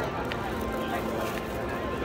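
Background chatter of people on a busy city street, with no single loud event.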